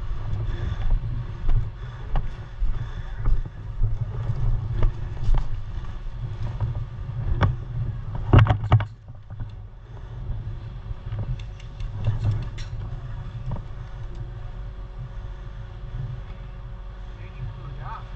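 A low steady rumble on a body-worn camera's microphone, with scattered sharp clicks and a quick cluster of them about eight seconds in.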